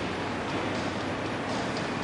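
Steady outdoor background noise in an open arena, an even rush with no distinct single event standing out.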